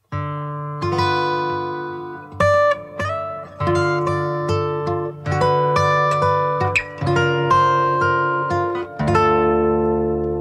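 Acoustic guitar playing a picked pattern of notes and chords. About nine seconds in, a last chord is struck and left ringing.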